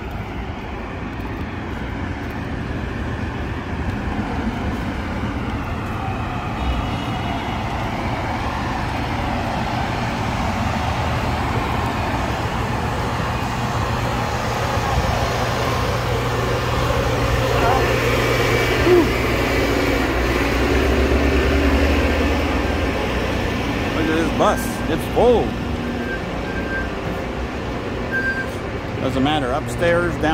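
A city bus's engine running close by over street traffic noise, a steady low rumble that grows louder partway through and then eases. Passers-by talk nearby.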